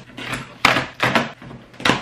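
Packing tape ripped off a cardboard shipping box and the cardboard flaps pulled open, in a few short, loud tearing and rustling bursts.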